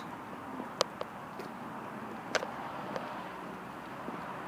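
Steady, faint outdoor hiss of distant traffic, with a few light, sharp clicks at irregular moments.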